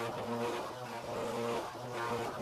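Handheld tile vibrator buzzing as it is pressed onto a freshly laid floor tile to bed it into the adhesive. Its steady hum swells and dips about twice a second.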